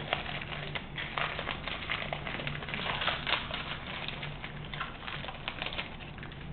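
Crinkling and crackling of a gold foil baseball-card pack wrapper as it is opened and the cards are slid out, as irregular small crackles and rustles.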